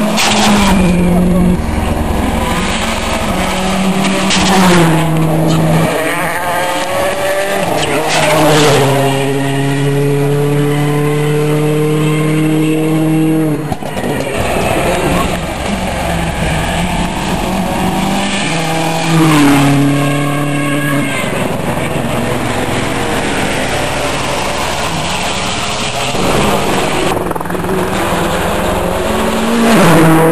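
Turbocharged World Rally Cars, among them a Subaru Impreza WRC, passing one after another at racing speed on a tarmac stage, engines pulling hard and changing pitch in steps through gear changes. Several cars go by, each pass swelling loud for a moment.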